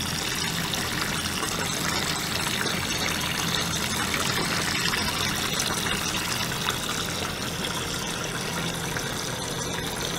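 Water churning and bubbling in a small stainless-steel tank as a small pump drives water in through a tube, a steady sound with a faint low hum under it.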